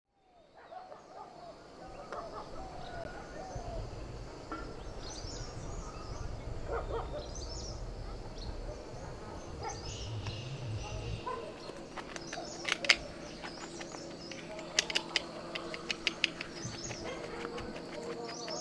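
Outdoor garden ambience with birds chirping and calling intermittently over a low rumble that fades about two-thirds of the way through. In the last third, a series of sharp clicks and taps stand out, the loudest a little before the end.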